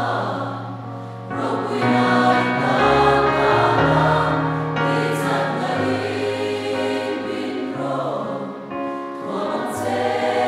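A congregation singing a hymn together over keyboard accompaniment, in long held notes that change every second or two.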